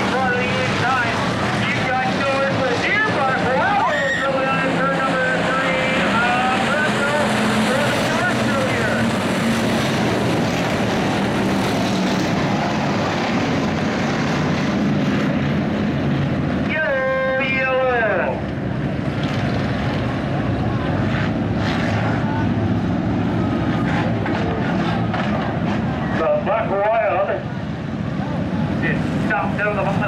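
A field of dirt-track stock cars racing around the oval, their engines running together in a steady, loud drone. Voices come through over the engines at times.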